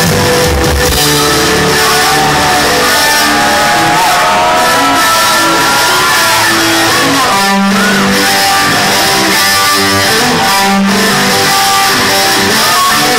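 Live heavy-rock band playing loudly: a lead electric guitar carries a melody that bends and wavers in pitch, over bass and drums.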